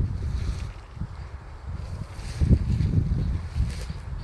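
Wind buffeting a phone's microphone: an uneven low rumble that gusts stronger in the second half, with faint brief rustles above it.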